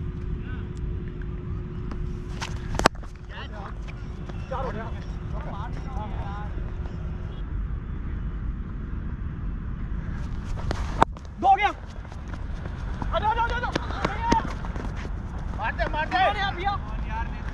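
Cricket bat striking the ball with a sharp crack about eleven seconds in, followed by players shouting, over a steady rumble of wind on a helmet-mounted camera's microphone. Another sharp knock comes about three seconds in.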